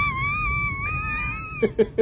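A single high-pitched wailing cry, held with a slight waver for about a second and a half before breaking off.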